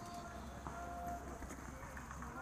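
Faint footsteps and gear rustle from a player moving on foot, picked up by a body- or head-mounted action camera, over a steady low rumble on the microphone.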